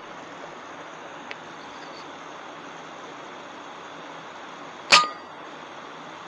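A single shot from an FX Impact M3 .22 PCP air rifle about five seconds in: one sharp crack with a brief ringing after it, over a steady hiss.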